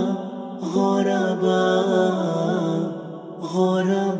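Nasheed vocal music: layered wordless voices chant and hum long held notes in harmony, breaking off briefly about half a second in and again near the end.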